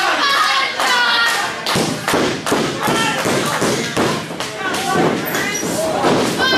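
Wrestlers' feet and bodies hitting the wrestling ring's canvas: a rapid run of sharp thumps, about two a second, with shouting voices over them.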